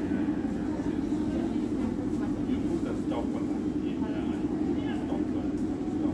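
Steady rumble and hum of an MRT train running, heard from inside the carriage, with faint voices in the background.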